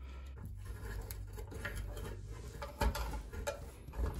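Sheathed electrical cable being handled and fed through a knockout into an electrical box: faint rubbing and scraping with a few small clicks, the sharpest about three seconds in, over a steady low hum.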